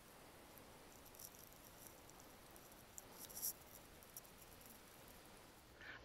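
Near silence: faint background hiss with a few soft, high-pitched ticks.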